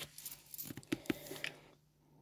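Black Posca paint-marker nib scratching and tapping on paper as words are hand-lettered: a faint, irregular run of small clicks and scrapes that stops near the end.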